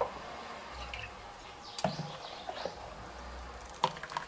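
Thin baghrir batter dribbling from a metal ladle into a bowl, with a few faint liquid sounds and short clicks, the sharpest near the end.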